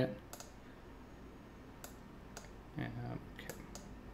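A few sharp, separate clicks of a computer mouse being used to navigate software.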